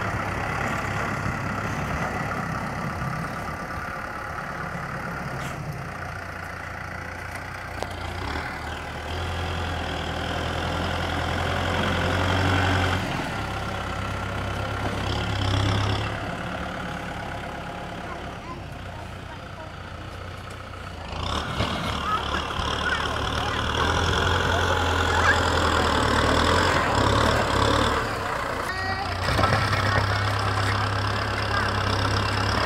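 Kubota M6040 SU tractor's diesel engine working as its front dozer blade pushes soil, the engine note swelling and easing as it drives over the pile, and growing louder about two-thirds of the way through.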